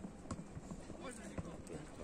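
Football match sound on a grass pitch: faint shouting from the players with a few dull knocks, the loudest about a second and a half in.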